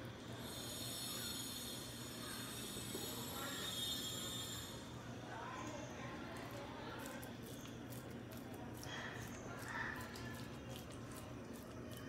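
Faint background sound: a steady low hum throughout, with a thin high-pitched whine for the first four to five seconds and faint distant voices later on.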